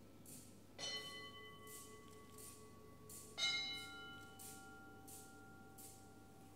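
Altar bell struck twice, about a second in and again past the middle, each strike ringing on with several slowly fading tones, the second stronger, as the chalice is raised at the consecration.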